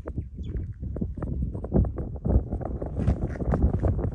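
Wind buffeting the microphone: an irregular, gusty low rumble with uneven thumps.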